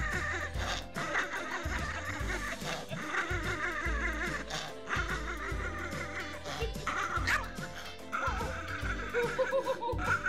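A Yorkshire terrier at close range making a long run of short, wavering growls and yaps, over upbeat background music.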